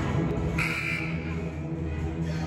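A gym scoreboard buzzer gives one short, high electronic tone about half a second in, under background music.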